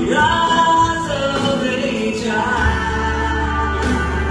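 A man singing into a handheld microphone, holding and sliding between long notes over a guitar backing track. A low, steady bass note comes in about two and a half seconds in.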